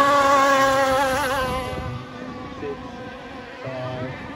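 Racing model hydroplane's engine buzzing at high revs as it passes close, its pitch wavering about a second in. After about two seconds it drops away to a fainter, distant buzz of the boats further out on the course.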